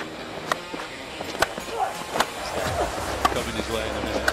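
Televised cricket match sound: a steady noisy background with faint voices and a few sharp clicks spread through it.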